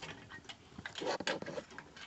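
Scattered light clicks and a brief rustle a little past halfway through, from hands handling the wiring and plastic connectors at a Ferroli boiler's control board.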